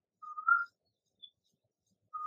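A single short whistle-like chirp, one clear note rising slightly at its end, about a quarter second in, with near silence around it.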